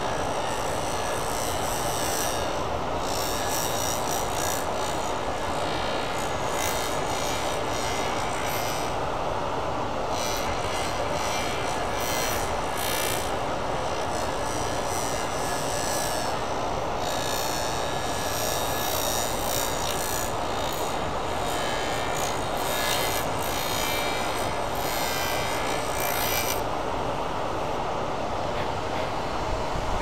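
Wood lathe running while a carbide hand tool cuts a spinning aluminum-honeycomb and resin pen blank: a steady whirr with rougher, brighter cutting noise that comes and goes as shavings fly off. The cutting stops a few seconds before the end, leaving the lathe spinning.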